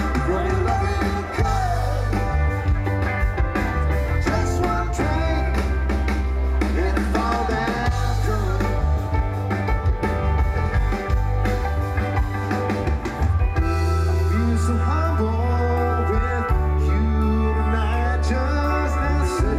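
A live rock band plays a continuous passage of music, with electric guitar, electric bass, keyboards and a drum kit.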